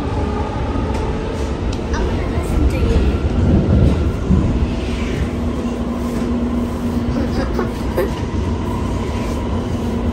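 Subway train running, heard from inside the carriage: a steady deep rumble with faint steady tones over it. A steady hum joins about four seconds in.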